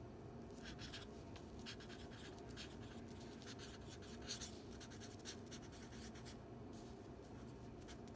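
Marker pen writing on paper: faint, irregular scratchy strokes of the tip as a word is written out letter by letter.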